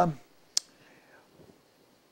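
A man's drawn-out "um" trails off, then one short, sharp click about half a second in, followed by quiet room tone.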